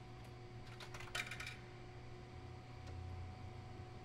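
Buttons on a vending machine keypad being pressed: a quick run of several sharp clicks in the first second and a half. A steady low hum runs underneath.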